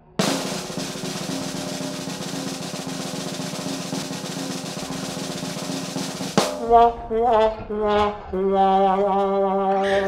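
Snare drum roll held steadily for about six seconds, then cutting off suddenly, followed by a short run of held musical notes, some bending in pitch.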